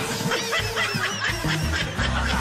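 Short bursts of high-pitched laughter over background music.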